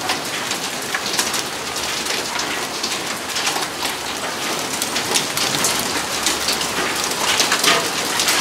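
Dime-sized hail mixed with rain pelting Renogy RNG-100D mono solar panels and the yard: a dense, steady clatter of many small impacts.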